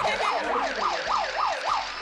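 Siren sound effect wailing rapidly up and down, about three sweeps a second, stopping just before the end.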